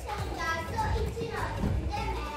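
Children's voices, talking and calling in high-pitched bursts, with a steady low hum beneath.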